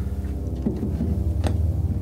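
Omnisphere synth pad holding a low sustained chord, played in the keyboard's lower split below middle C. There is a brief click about one and a half seconds in.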